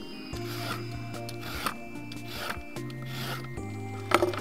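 A Y-peeler scraping the skin off a carrot on a plastic cutting board, in several rasping strokes about a second apart.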